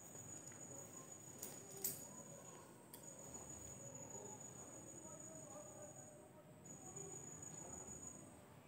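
Near silence with a faint, steady high-pitched whine that drops out and returns a couple of times, and a few light clicks in the first three seconds.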